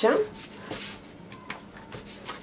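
Plastic dough scraper cutting through soft yeast dough on a silicone mat: a soft scrape, then two light taps of the scraper on the mat in the second half.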